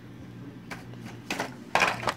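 Plastic blister pack of a carded Hot Wheels car being handled: a few light clicks, then a brief louder crinkle near the end.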